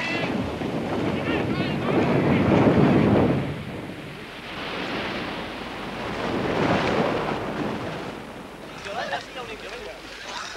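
Sea surf washing in: two long swells of rushing noise that rise and fall.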